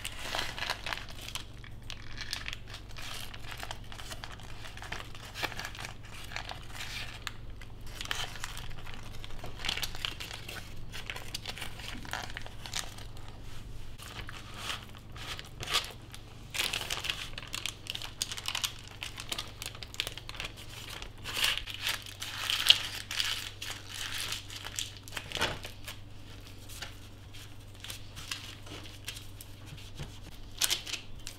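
Baking paper crinkling and rustling as it is lifted and rolled around a soft food roll, in irregular crackles with a few sharper ones later on. A faint steady low hum runs underneath.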